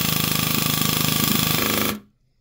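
VFC MP7 electric airsoft gun firing on full auto with its gearbox out of the shell, an even burst of about twenty shots a second that stops suddenly near the end. It is a test-fire mag dump through a chronograph after nozzle and hop-up follower work, and the gun cycles without jamming.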